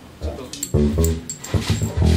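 A man talking in Japanese, with faint instrument sounds from the band behind him.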